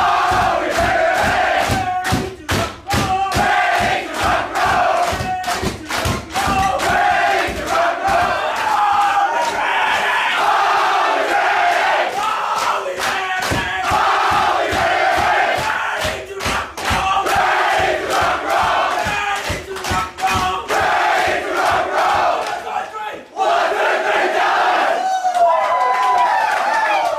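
A rugby team singing and chanting loudly together, with rhythmic thumps of feet stamping and jumping on the floor, about two to three a second, that come and go through the song.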